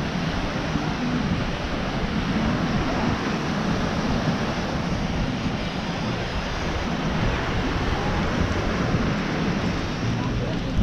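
Steady rushing of wind on the microphone over the wash of surf breaking on the shore, heavy in the low end and without pause.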